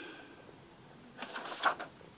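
Mostly quiet room, with a few faint, short rustles from handling a paper kit instruction booklet in the second half.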